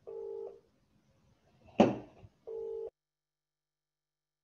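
Two short electronic telephone-style beeps, each about half a second of steady pitch, about two and a half seconds apart, with a sharp knock between them that is the loudest sound.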